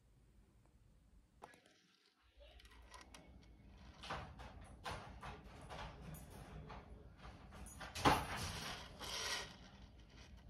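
Handling noise from a metal tennis bracelet being moved about on a tabletop: scattered light clicks and rustles starting about two seconds in, with one louder knock about eight seconds in.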